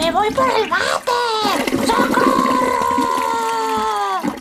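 A person voicing a toy character's cry: short wailing yelps, then one long held yell that drops in pitch and fades at the end, as the character is flushed down the toilet.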